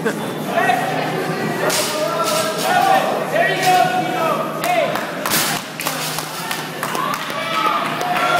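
Voices of people calling out in a large gym hall, with several sharp thuds among them.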